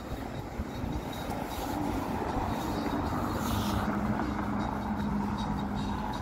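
Traffic noise with a vehicle's steady engine hum, which grows a little louder about halfway through.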